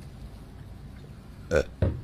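A man's short burp about one and a half seconds in, followed at once by a second brief throaty sound; before it there is only faint background noise.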